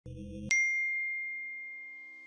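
Intro logo sting: a low soft tone, then about half a second in a single bright chime that rings on and slowly fades, with soft low notes entering beneath it.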